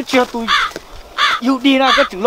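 Only speech: a man's voice talking loudly in quick, animated phrases.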